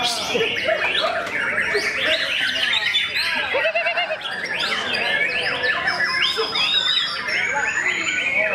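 Many songbirds singing and chattering at once: a dense, continuous mix of overlapping whistles, chirps and warbles.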